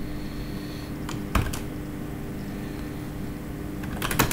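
Computer keyboard being typed on: a few short key clicks about a second and a half in, over a steady low hum.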